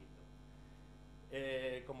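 Steady low electrical mains hum; a man's voice starts speaking about two-thirds of the way in and is the loudest sound.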